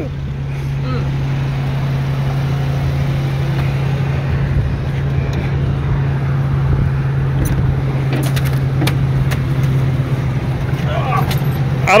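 Suzuki 4x4's engine idling with a steady low hum. A few light clicks and knocks come about seven to nine seconds in.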